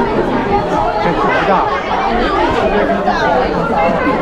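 Crowd chatter: many students talking at once in a packed room, a steady babble of overlapping voices.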